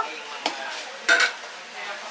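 Metal serving spoon stirring a wet fruit-and-cream salad in a large stainless steel bowl, with a soft squelching bed and two clinks of the spoon against the bowl, the louder one just after a second in.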